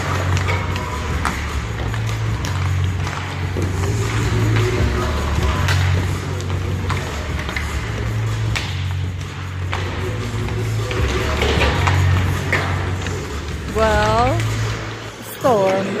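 Arena music over the PA with a heavy, pulsing bass beat, with scattered sharp clacks of hockey pucks and sticks on the ice. A voice comes in near the end.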